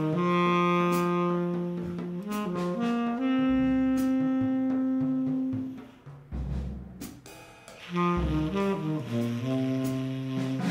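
Tenor saxophone playing free jazz: long held low notes broken by short runs, with a pause about six seconds in. A few low drum thuds and knocks fall in the pause.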